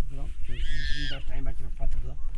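A man's low voice talking, with a brief high-pitched wavering call about half a second in, over a steady low rumble.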